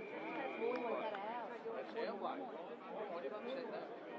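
Several voices calling out and talking over one another, from players and spectators. A long, steady whistle blast carries on into the first second and then stops.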